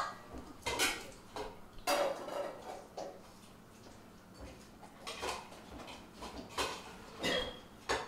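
A cooking spoon stirring meat in a metal pot on the stove, scraping and knocking against the pot's sides and bottom in a string of irregular clinks.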